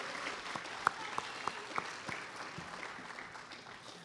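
Audience applauding, with a few single claps standing out, the clapping gradually dying away.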